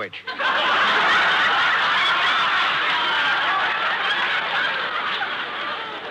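Live studio audience laughing at a punchline. The laughter swells about half a second in and slowly dies away. It is heard through the narrow, muffled bandwidth of a 1940s radio broadcast recording.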